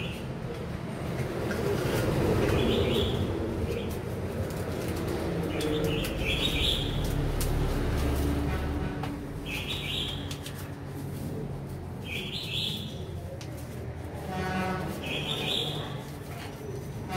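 Recorded bird calls played through a horn loudspeaker driven by a bird-trapping amplifier, with a short high call repeating about every three seconds.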